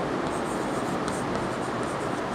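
Chalk scratching on a chalkboard as a word is written in a series of short strokes, over a steady background hiss.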